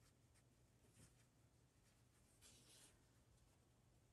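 Near silence with faint handling of a needle and embroidery thread being drawn through a stitched fabric piece: a few light ticks and a brief soft rasp a little past halfway.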